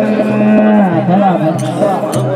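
Men's voices singing a devotional folk bhajan through microphones: one long low note is held for about the first second, then the melody moves on, over a low, evenly repeated pulse.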